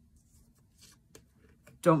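Faint, soft rustling of tarot cards being handled and drawn from the deck, with a light tick about a second in; a woman's voice starts speaking near the end.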